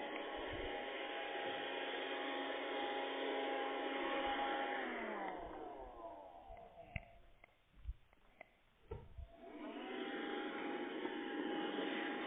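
Telephone-line noise on a call that has been put on hold: a steady hiss with a held whistle-like tone. About five seconds in, the tone slides down and the noise dies away to a few clicks. Near ten seconds it comes back, rising up to the same pitch.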